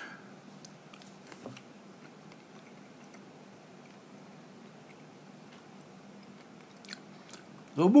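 Faint chewing of a soft jelly bean with the mouth closed, with a few soft clicks. A man's voice starts again at the very end.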